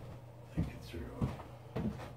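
Three dull thumps a little over half a second apart, as a person moves about a small room, with a faint voice in between.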